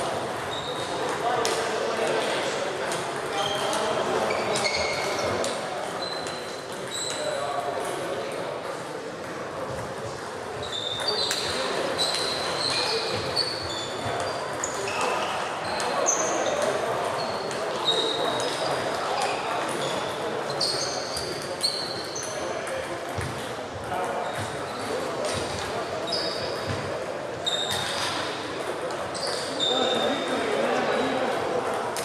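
Table tennis balls clicking off bats and tables in quick irregular ticks, from several rallies at once, over a steady murmur of voices in a large echoing hall.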